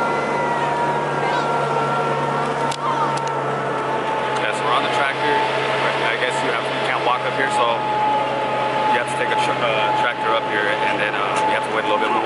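Tractor engine running at a steady speed while towing a hayride wagon, with passengers' voices chattering over it from about four seconds in.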